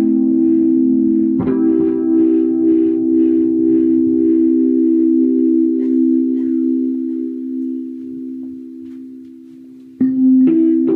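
Rhodes Mark I electric piano played through a multi-effects pedal. A held low chord is restruck about a second and a half in and rings on with a pulsing shimmer in its upper notes, two or three times a second. It fades away over the last few seconds.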